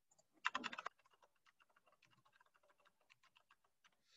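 Computer keyboard keystrokes: a quick burst of typing about half a second in, then a string of fainter taps.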